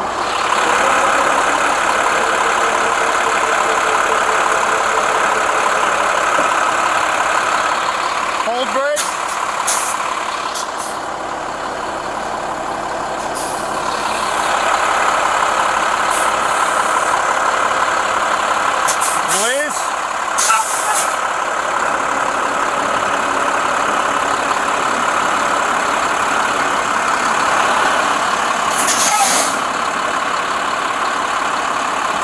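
A heavy tow truck's engine running steadily to drive its hydraulic winch, pulling a stuck utility truck out on the cable. Three short rising whines come about ten seconds apart, with brief hissing bursts between them.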